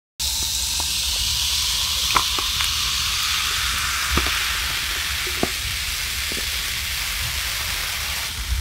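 Dark carbonated soda poured from a can into a glass mug over large ice balls, fizzing with a steady hiss and a few sharp pops and cracks.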